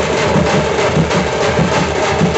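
Tamil Nadu street bandset drumming: large double-headed bass drums and snare-type side drums beaten with sticks in a loud, fast, steady rhythm.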